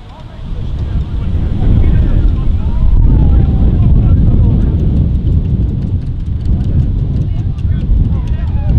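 Wind buffeting the camera microphone, a loud low rumble that swells about a second and a half in, with faint distant voices of players calling on the pitch.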